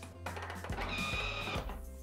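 Soft background music with a few held notes.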